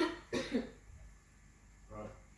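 A person coughing: two short coughs just after the start, then quiet room tone.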